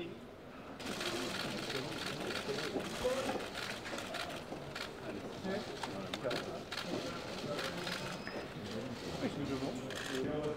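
Indistinct murmur of voices in a hard-walled hall, with a run of many sharp clicks and taps starting about a second in.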